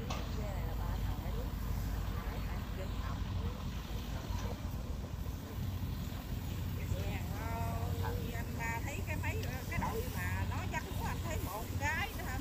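Steady low drone of combine harvesters' diesel engines working a rice field. People's voices talk over it about halfway through and again near the end.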